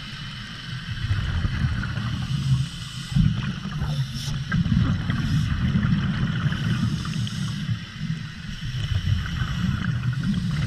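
Underwater sound of scuba divers heard through the camera housing: a muffled low rumble with the bubbling of regulator exhalations, swelling and fading unevenly, loudest about three seconds in.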